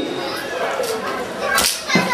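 Plastic hoops spun on a child's outstretched arms, with a few sharp clacks; the loudest comes about a second and a half in.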